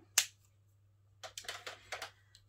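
Plastic Stampin' Write markers being handled on a tabletop. One sharp click comes just after the start, then a cluster of softer clicks and taps from about a second in until near the end.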